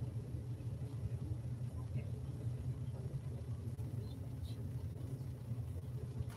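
A steady low rumble of room background noise, with a few faint, scattered small sounds.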